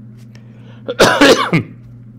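A man's single loud cough about a second in, lasting about half a second.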